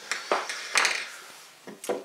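A few sharp knocks and a short scrape of metal stepper-motor parts being handled on a workbench, as the stator housing is picked up.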